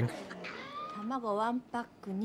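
A woman speaking Japanese, in film dialogue, in a high voice whose pitch wavers up and down.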